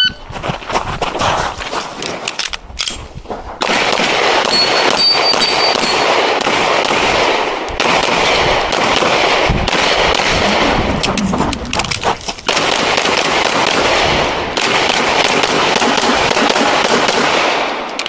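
A shot timer beeps once at the start, then a handgun fires rapid strings of shots through a timed competition stage, with a short lull about three seconds in.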